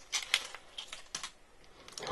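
Faint, irregular small clicks and crinkles of a plastic surprise-egg capsule and its wrapper being handled and opened by hand.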